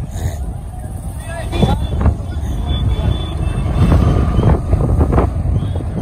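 Street traffic: motorcycle engines running with a steady low rumble, with indistinct voices of people nearby and some wind on the microphone.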